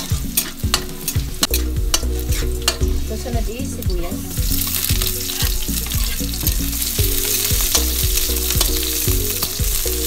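Chopped garlic sizzling in hot oil in a steel wok, with a metal spatula clacking and scraping against the pan in quick stirring strokes. About four seconds in, sliced onion goes into the oil and the sizzle grows louder and steadier.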